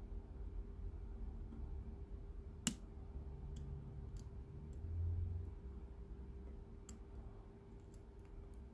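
Steel lock pick working the pins of a brass pin-tumbler lock cylinder under tension: a handful of small metallic clicks, one sharper click about three seconds in, over a faint steady hum.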